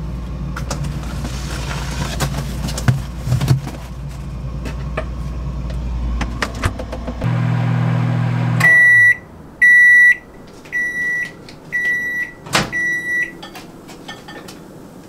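Black+Decker countertop microwave oven running with a steady hum that stops about eight seconds in as the timer runs out, then beeping five times to signal the end of the heating cycle. A sharp click near the end as the door is opened.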